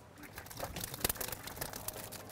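Plastic stone crab trap being handled and its lid opened: a run of light clicks and knocks of plastic, with one sharper knock about a second in.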